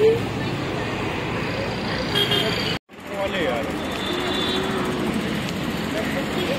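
Steady city road traffic noise, with motor vehicles passing, background voices and a short horn tone. The sound cuts out abruptly for a moment about three seconds in.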